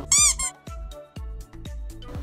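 A single short, high-pitched squeak that rises and falls in pitch, loud and lasting about a quarter of a second near the start, over steady background music.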